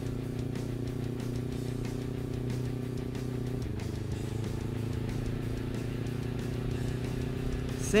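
Kawasaki Ninja motorcycle engine running at a steady cruising speed, a steady drone that shifts slightly in pitch about halfway through.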